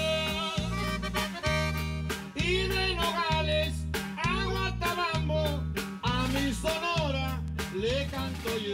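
Norteño band playing a corrido: button accordion carrying the melody over electric bass and acoustic guitar, with the bass on a steady two-beat pulse about every half second.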